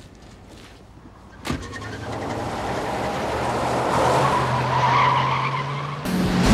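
A car door slams shut about a second and a half in. Then the SUV's engine note rises steadily and grows louder as the vehicle pulls away fast, with tyre noise on the road building underneath.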